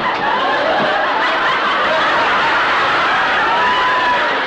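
Sitcom studio audience laughing, many voices at once, loud and sustained.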